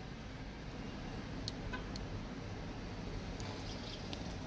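Low, steady background noise with a few faint, brief clicks.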